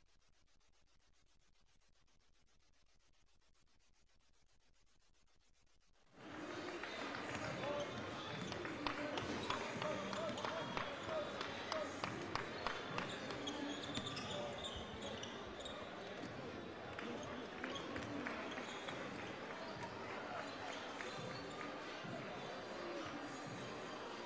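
Near silence for about six seconds, then several basketballs bouncing on a hardwood gym floor during warmups, many quick knocks overlapping, over the murmur of a crowd talking in the stands.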